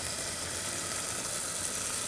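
Hot ghee sizzling steadily in a nonstick pan as creamy chicken gravy is spooned in from a bowl.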